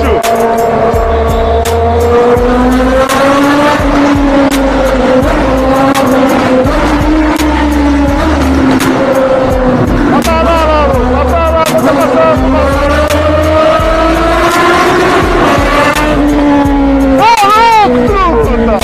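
Motorcycle engine running steadily at cruising speed while riding through traffic, under background music with a pulsing bass beat and a singing voice.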